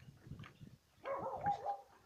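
Faint rattle and knock of a metal chain latch being handled on a wooden door, then about a second in a loud, wavering whining call from an animal that lasts under a second.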